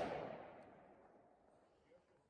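The fading tail of a pistol shot fired just before, its echo dying away within the first second, then near silence.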